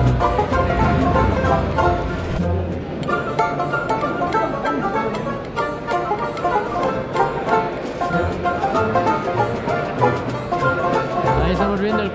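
Background music with a steady beat and quick runs of short notes.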